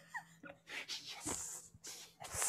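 Soft, breathy laughter: a few short chuckles and exhaled breaths, with a faint falling squeak near the start.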